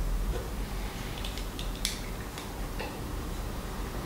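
A few faint, sharp metallic clicks and ticks, one a little louder near the middle, as a caliper is fitted over a brass rifle cartridge and the cartridges are handled on a table, over a low steady hum.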